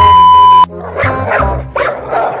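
A loud steady test-tone beep, the television colour-bars transition effect, cuts off sharply about two-thirds of a second in. Background music with a beat follows, with short repeated dog barks over it.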